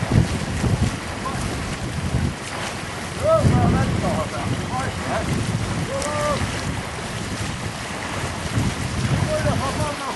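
Wind buffeting the microphone over open sea water, a gusty low rumble. A few brief distant voices call out a few seconds in, again around the middle, and near the end.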